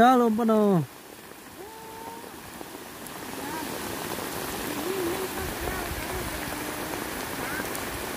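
Steady rain falling on the field, growing louder about three seconds in. A woman speaks briefly at the start, and a faint voice wavers under the rain later on.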